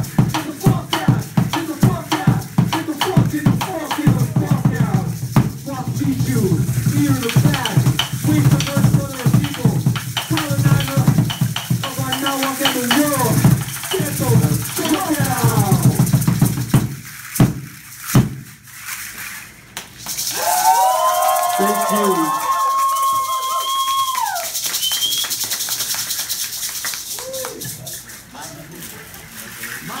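Live percussion: a tall upright wooden drum beaten in a fast steady rhythm, with shaken rattles and wordless chanting over it. The drumming stops with a few hard strikes a little past halfway, then comes a long wavering cry lasting several seconds, and rattles shaking near the end.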